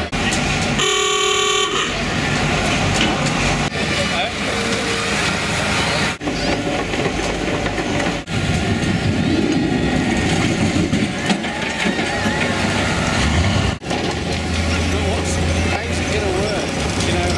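A single horn blast of about a second, bright with many overtones, over a crowd's chatter and a low engine rumble.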